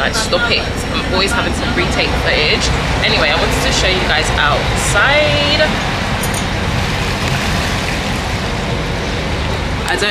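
Indistinct voices over the steady low hum of a motor yacht under way. About six seconds in, the voices give way to a steady rush of wind and water.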